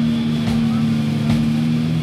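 A distorted electric guitar note held through the amplifier as a steady drone, with two light drum hits, one early and one past the middle.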